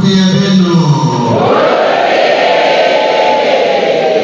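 A man's voice chanting on held, steady pitches through a microphone, then from about a second in many voices answering together in a sustained sung response.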